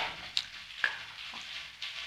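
A short pause in a man's speech: a steady faint hiss of the recording's background noise, with a couple of small clicks.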